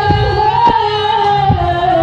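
A female singer holding a long sung note live into a microphone over loud backing music with a bass line and a few drum hits, the pitch dipping slightly near the end. It is recorded from the audience.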